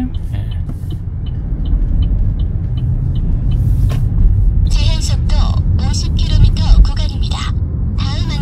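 Steady engine and road rumble inside a moving Chevrolet car's cabin as it drives out of a left turn. A light regular ticking from the turn-signal indicator runs for the first three seconds or so.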